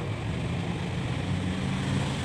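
A motor running steadily nearby, a low droning hum that grows slightly stronger about halfway through.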